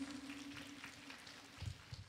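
Faint room sound fading away after a live acoustic set, with a low steady hum that dies out and a soft low thump near the end.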